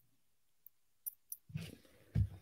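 Mostly quiet, with three faint short clicks in the first half and a soft low rustle near the end.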